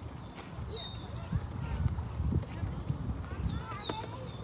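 Stroller wheels rolling over a crushed-gravel path: a low rumble with irregular knocks, louder in the middle.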